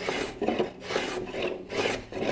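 Small block plane shaving the wooden keel in short repeated strokes, about two a second, roughing in a bevel.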